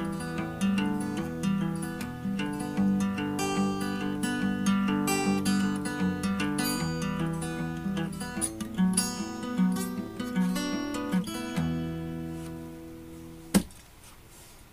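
Acoustic guitar playing the closing bars of a folk song, ending on a last chord that rings and fades away. A single sharp click comes just before the end.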